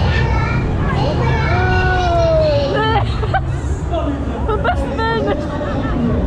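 Voices shouting and calling around a spinning fairground ride, with one long drawn-out call in the middle, over a steady low rumble from the ride and the fairground.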